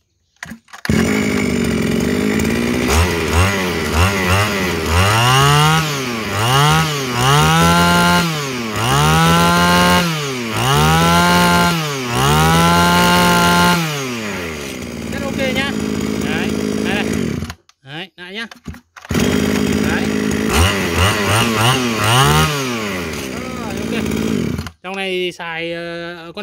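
Kawasaki 23cc two-stroke brush cutter engine starting about a second in and idling, then revved six times in quick throttle blips that rise and fall, settling back to idle each time. About two-thirds through it falls silent briefly, runs again with two more revs, and stops near the end.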